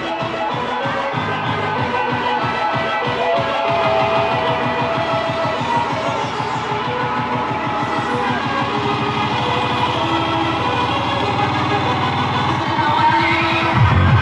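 Live rock band playing loud in a club, with a steady low beat that speeds up through the middle and builds into a louder, fuller passage at the very end.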